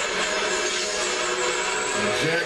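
Action-film soundtrack: a dense, steady mix of fight and fire sound effects, with a few faint held tones underneath.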